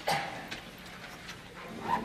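Quiet hall noise between band pieces: a sharp click at the start, then two short pitched yelp-like sounds, one just after the start and one rising near the end.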